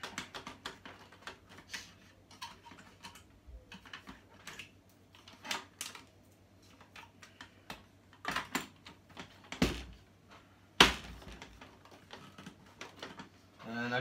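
Irregular light clicking and tapping of screws, a cordless drill/driver and parts being handled on a dismantled flat-screen TV's metal chassis, with two sharper knocks about ten and eleven seconds in.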